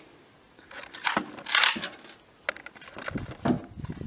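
Metallic clicks and a brief sliding scrape as the bolt of a Desert Tactical Arms SRS bolt-action bullpup rifle is worked by hand between shots. The clicks start about a second in.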